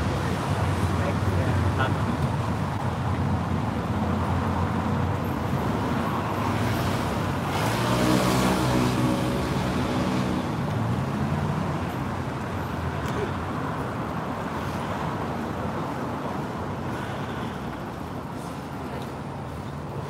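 Road traffic noise. A vehicle passes about eight seconds in, its engine rising and then fading away.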